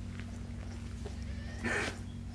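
A newborn kitten gives one short, high squeak near the end, over a steady low hum.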